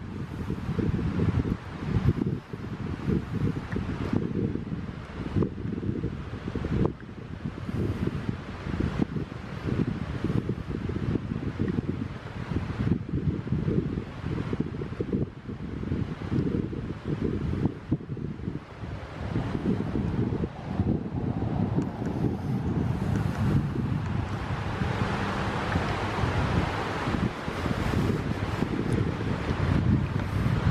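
Wind buffeting the microphone of a handheld camera, an uneven low rumble that flutters throughout, with a rushing hiss that swells in the last few seconds.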